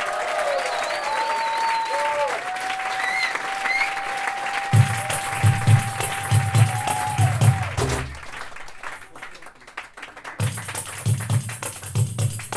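Live percussion music: a long, high held note with slides in pitch runs for most of the first eight seconds. From about the middle, a low drum beat of two to three strokes a second comes in with a hiss of shakers above it. Audience clapping follows, and the low beat comes back near the end.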